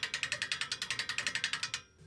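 Hand-cranked ratchet winch on a homemade deer hoist clicking rapidly and evenly, about ten clicks a second, as its pawl rides the ratchet gear while the crank is turned to lift a deer; the clicking stops abruptly near the end.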